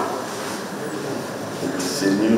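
Steady background noise of a large hall, even and without speech, in a pause of the Oba's address.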